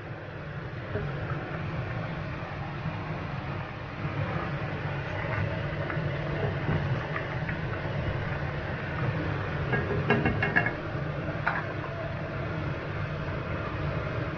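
Soy-braised sauce bubbling in a wok under a steady low hum, with a wooden spatula scraping and tapping the pan now and then, a short cluster of taps about ten seconds in.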